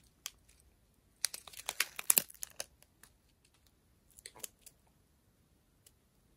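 Strip of plastic bags of diamond painting drills crinkling as it is handled: a dense burst of crackling from about a second in, and a shorter one a little after four seconds.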